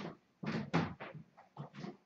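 A run of short knocks and clatters, about eight in two seconds, from someone moving about and handling things in a small room.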